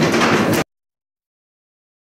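Wooden candlepins clattering as they fall and tumble in the pit, cut off abruptly after well under a second and followed by dead silence.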